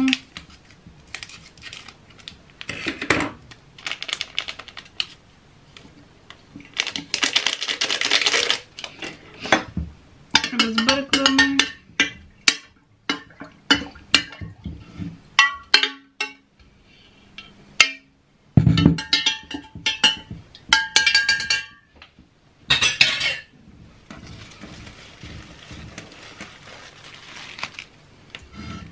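Scissors snipping open a small plastic sachet of flower food, the packet rustling, then a hand stirring water in a glass vase with repeated clinks and knocks against the glass.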